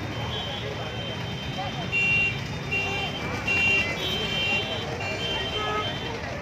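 A JCB backhoe loader's reversing alarm beeping repeatedly, starting about two seconds in, over its running engine, with crowd voices behind.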